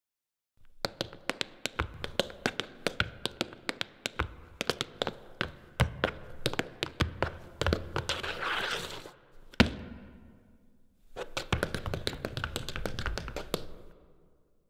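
Tap shoes striking a hard floor in a quick, irregular tap-dance routine. A swelling swish leads into one heavy stamp about two-thirds of the way through, and after a brief pause another flurry of taps follows.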